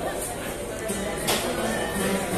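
Acoustic guitars strummed, with a couple of sharp strokes, over the chatter of voices in a bar room.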